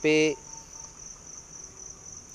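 Steady high-pitched insect chirring with a fast, even pulse, under a man's single short spoken word at the start.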